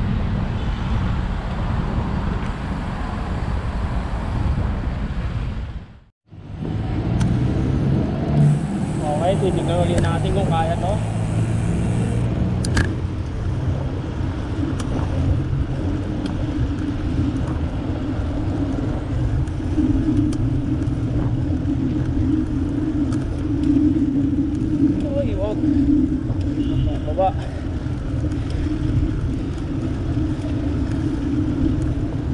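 Wind rushing over a handheld or bike-mounted camera's microphone, mixed with road traffic noise, while riding a bicycle along a city road. The sound drops out for a moment about six seconds in, then a steadier wind and road noise carries on.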